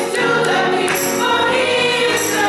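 A small gospel choir singing a worship song.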